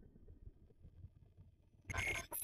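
Near silence with a faint low rumble in an animated film soundtrack, then a sudden loud, noisy sound effect near the end.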